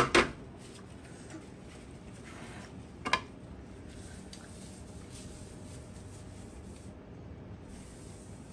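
Quiet room tone with small handling knocks at a table: a sharp clatter right at the start and one short knock about three seconds in.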